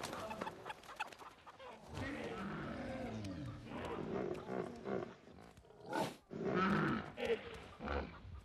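A pig grunting in drawn-out calls that waver in pitch, with a short sharp noise about six seconds in.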